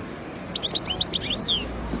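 European goldfinch giving a short burst of quick twittering notes, about a second long, ending in a falling note.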